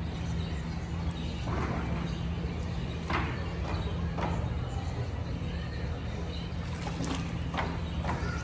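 Alligators thrashing in shallow water for food, giving short splashes at irregular intervals over a steady low hum.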